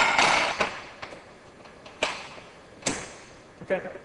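Plastic phone-case moulds handled on the metal tray of a vacuum sublimation machine: a short rustling scrape at the start, then a few sharp clicks and taps about a second apart as the moulds are pressed into place.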